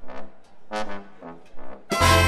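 Big band brass, led by the trombone section, playing about four short, detached notes with gaps of near quiet between them. A loud full-band chord comes in right at the end.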